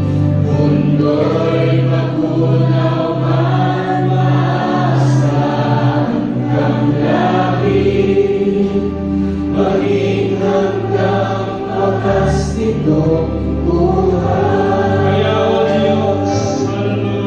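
Live worship band and singers performing a gospel song: several voices singing over keyboard, bass and drums, with a few cymbal splashes.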